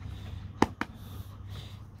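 Two short sharp clicks about a fifth of a second apart, a little over half a second in, over a faint steady low hum.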